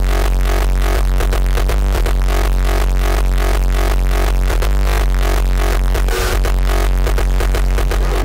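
Loud electronic dance music with a heavy, steady bass and a fast, even beat.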